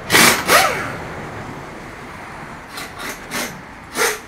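A large mud-terrain truck tire being rolled by hand across a concrete floor: two loud knocks near the start, then a low rolling rumble with a few light bumps.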